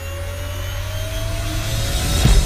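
Locomotive running, heard from the cab: a steady low hum with a thin whine slowly rising in pitch, as under acceleration.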